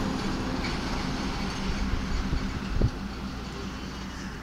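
A steady low mechanical hum and rumble, with one short knock a little under three seconds in.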